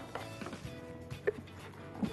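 Faint background music, with a couple of soft knocks as chopped salad is tipped from a plastic food-chopper bowl into a glass bowl.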